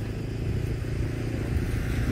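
A van's engine running with a steady low hum as it comes up close.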